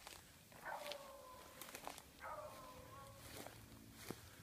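A dog baying faintly twice on the trail of a swamp rabbit: two drawn-out calls about a second each, steady in pitch and sliding slightly down at the end.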